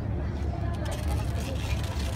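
Outdoor ambience: a steady low rumble with faint voices over it.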